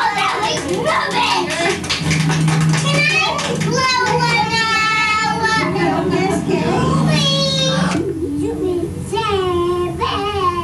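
Several young children's high-pitched voices overlapping as they chatter and squeal at play, with a steady low hum underneath. About eight seconds in the voices thin out to a few brief calls.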